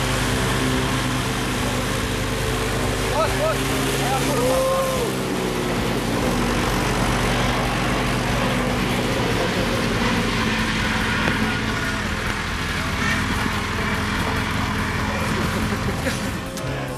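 John Deere cab tractor's diesel engine running steadily close by.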